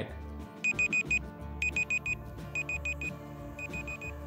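Electronic alarm-clock beeping from a quiz countdown timer: a high single-pitched beep in quick groups of four, about one group a second, over soft background music.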